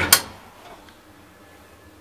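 Old elevator car floor button pressed: two sharp clicks in quick succession, followed by a faint steady hum.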